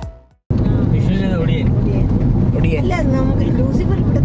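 Background music fading out, then after half a second of silence, the steady low road and engine rumble heard inside the cabin of a moving Maruti Suzuki Ertiga.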